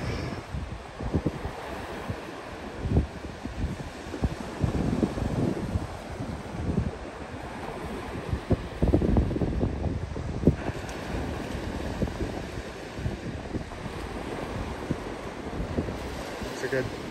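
Wind gusting against the microphone in irregular low rumbles, over the steady wash of surf breaking on the beach.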